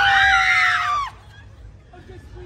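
Young women screaming in fright together, startled by a prankster hidden in a bush costume. The high screams are held for about a second, then stop suddenly.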